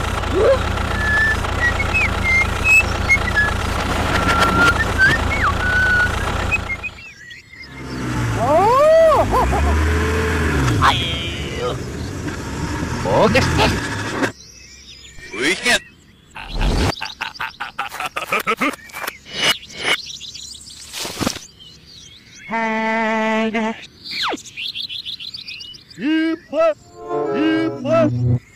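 Engine sound effect for a toy tractor, a steady low running hum that cuts off about seven seconds in. After it come sliding whistle-like tones, then a run of short sharp clicks and knocks and a brief pitched cry near the end.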